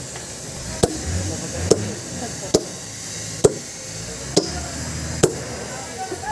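Sledgehammer striking steel wedges set in a row of notches along a long stone slab to split it. There are six hard blows, about one a second, each with a short metallic ring.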